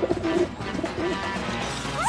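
Pigeon cooing, a few short low coos in the first half, over light background music.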